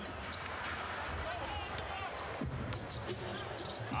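Basketball being dribbled on a hardwood court, with short sharp bounces coming every few tenths of a second in the second half, over a steady arena crowd murmur.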